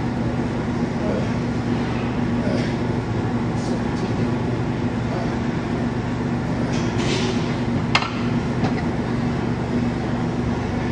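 Gym room tone: a steady low hum with faint voices in the background, and one sharp clink about eight seconds in.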